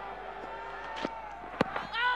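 Cricket ground crowd murmuring through a delivery, with a sharp knock about one and a half seconds in as the ball strikes the batsman's pad on the ball given out LBW.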